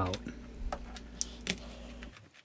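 A few light clicks from hands handling the plastic housing of an air purifier, over a faint steady hum.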